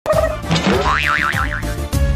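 A comic boing sound effect, a wobbling tone that swings quickly up and down, laid over background music with a steady low beat.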